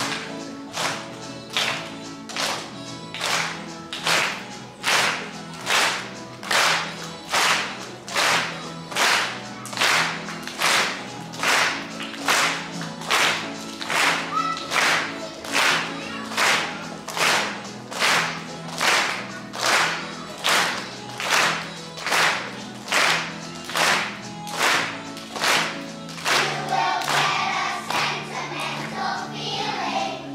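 A children's choir clapping their hands in time, about two claps a second, over a steady instrumental accompaniment. Near the end the clapping stops and singing comes back in.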